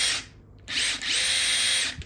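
Makita cordless impact driver free-running at top speed with no load: a steady high whine that cuts off just after the start, then after a short pause a driver spins up again with a rising whine and runs steadily until it stops near the end. No hammering from the impact mechanism, since nothing is being driven.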